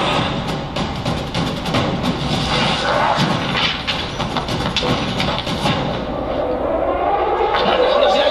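Soundtrack of a Japanese TV drama clip heard through a hall's loudspeakers: music with rapid clattering sound effects, and a voice near the end.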